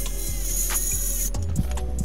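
Background music with a steady beat, over a cordless circular saw cutting through a pine board; the saw noise stops suddenly about a second and a half in.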